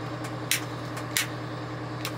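Two sharp clicks of dashboard rocker switches being pressed, about half a second in and again under a second later, over the steady hum of the fire truck's idling diesel engine.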